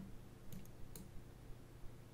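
A few faint clicks at the computer, spaced about half a second apart, over quiet room tone.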